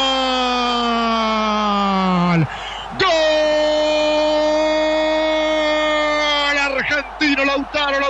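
A radio football commentator's drawn-out goal shout: one long held cry sliding slowly down in pitch, a quick breath about two and a half seconds in, then a second long held cry at a steady pitch that breaks into rapid speech near the end.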